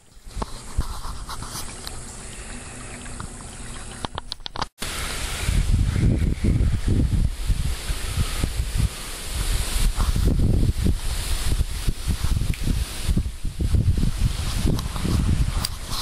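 Wind buffeting the microphone in irregular gusts over a steady hiss. The sound cuts out for an instant about five seconds in, and the gusts are louder after that.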